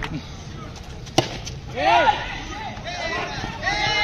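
Players shouting and calling on the field, loud rising-and-falling cries around two seconds in and again near the end, with one sharp crack a little over a second in.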